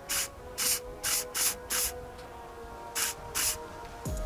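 Spray lacquer hissing in about seven short bursts, several a second and then two more after a pause, as a lure blank is coated layer by layer.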